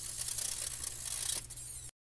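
A crackling, hissy sound effect over a steady low hum, laid under an animated end screen. It changes about a second and a half in, with faint high sweeping tones, then cuts off abruptly just before the end.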